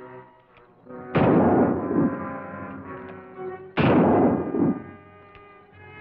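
Two revolver shots, the first about a second in and the second near four seconds, each echoing and fading over about a second, over background music.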